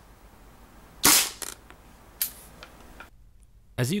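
Single shot from a KWA LM4 gas blowback airsoft rifle fitted with an Angel Custom rocket valve, a loud sharp report about a second in with a brief ring after it, followed about a second later by a fainter sharp crack.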